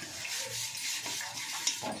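A hand smearing wet mud paste (leva) over the outside of an aluminium cooking pot, heard as a run of wet rubbing and scraping strokes. The mud coating goes on so that the fire's soot does not blacken the pot.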